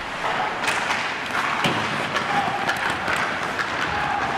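Ice hockey practice on the rink: skate blades scraping the ice, broken by several sharp clacks of sticks on pucks.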